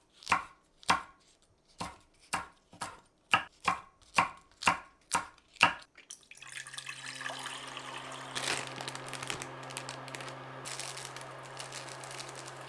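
Kitchen knife chopping green chilli peppers on an end-grain wooden cutting board: about a dozen sharp strikes at roughly two a second. About six seconds in, the chopping stops and water pours steadily from a jug into a saucepan.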